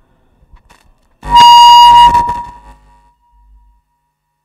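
Public-address feedback from a lapel microphone: a sudden loud, steady squeal starting about a second in, holding for about a second, then dying away. A few faint handling clicks come before it.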